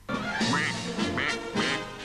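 Duck quacking about three times over music, starting abruptly.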